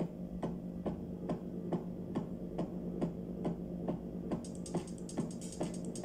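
Electronic music from a drum machine and synthesizer setup: a steady pulse of drum hits about two a second over a held low synth note. A bright, fast ticking pattern comes in about four and a half seconds in.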